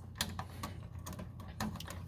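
Light, irregular clicks and rustles of handling as fingers push wires aside on a furnace control board, with one sharper click just after the start.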